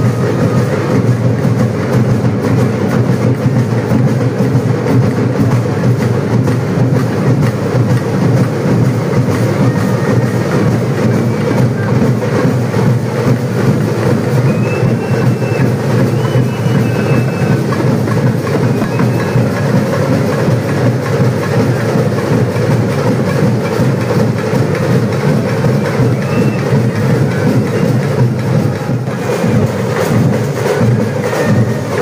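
Loud, continuous drumming in a dense, fast, unbroken rhythm: festival percussion played without pause.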